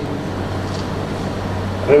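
Steady background noise with a constant low electrical hum, picked up through the microphone between sentences.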